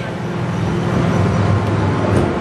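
Small tourist road train with open plastic carriages driving past close by: a steady low engine hum with the noise of its wheels rolling.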